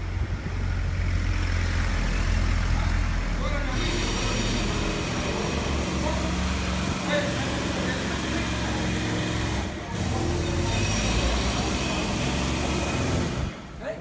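A heavy motor vehicle running close by on the street: a deep engine rumble at first, then from about four seconds in a loud hiss with a faint whine that lasts most of the rest, broken briefly just before the ten-second mark and fading near the end.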